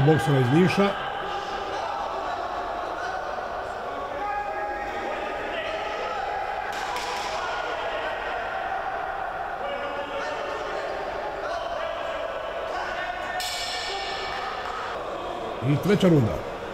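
Live ringside sound of an amateur boxing bout in a sports hall: a steady background of crowd voices with scattered shouts, and a few dull thuds.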